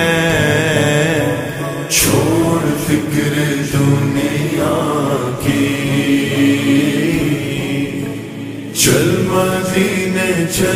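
Slowed-down, reverb-heavy naat: a singing voice drawing out long held notes, with two sudden bright swells, about two seconds in and near the end.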